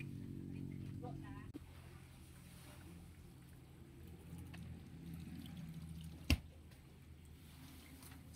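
Quiet background with a low steady hum, a faint brief pitched sound about a second in, and one sharp knock about six seconds in.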